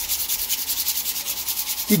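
Rapid rhythmic rubbing right against the phone's microphone, about ten scratchy strokes a second, as a hand brushes over or near it; it stops abruptly near the end.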